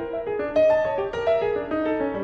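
Piano alone playing a quick passage of leaping broken-chord figures, one note after another, with a louder stroke about half a second in; the alto saxophone is resting.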